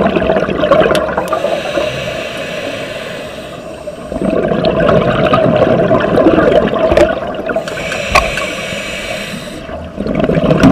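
Scuba diver breathing through a regulator underwater: a loud rush of exhaled bubbles, then a softer hiss of inhaling, twice over.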